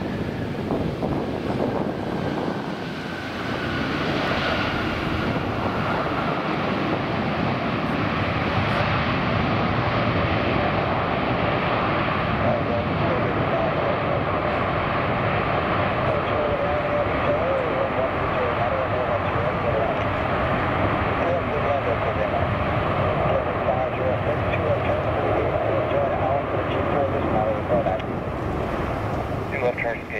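An Airbus A350-900 airliner's Rolls-Royce Trent XWB engines as it touches down and rolls out. A high engine whine falls slowly in pitch over the first ten seconds. About four seconds in, a loud steady jet roar swells and holds through the rollout, as the reversers slow the aircraft on the runway.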